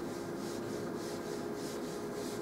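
Chalkboard being wiped with an eraser: brisk back-and-forth rubbing strokes, about two to three a second.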